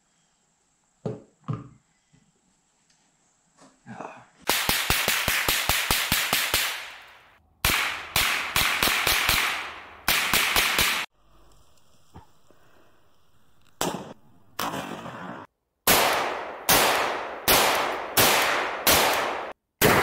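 Rifle gunfire in rapid strings of shots, starting about four seconds in. After a short lull, single shots follow about three-quarters of a second apart near the end.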